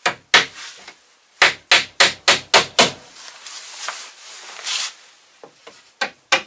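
Hammer nailing wooden strips to a wooden wall: two blows, then a quick run of six blows about four a second, followed near the end by a brief scrape and a few light taps.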